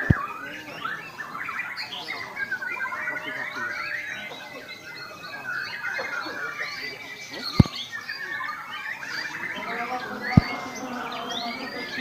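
Many caged songbirds singing at once in a dense, overlapping chorus of quick chirps and trills. Three sharp knocks cut through it: one at the very start, one about seven and a half seconds in and one about ten and a half seconds in.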